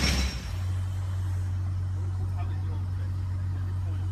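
Audi R8's V8 engine idling with a steady low hum, after a short louder burst right at the start.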